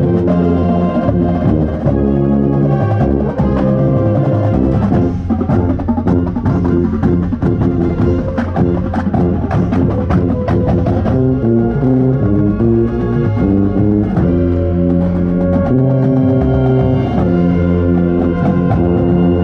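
Drum corps brass line playing a loud ensemble passage, with a contrabass bugle right by the microphone giving a heavy low end. Held chords move from one to the next about every second, with percussion underneath.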